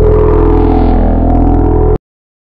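Loud electronic drone of a TV programme's logo transition sting: a steady, deep, sustained chord that cuts off suddenly.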